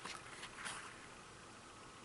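Faint rustling of a textured-paper cardboard CD package being handled and opened, two soft brushing sounds in the first second over quiet room tone.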